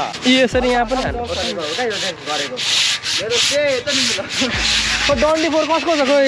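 Jacket fabric rubbing and brushing against the microphone in short rasping strokes, with a person's voice over it.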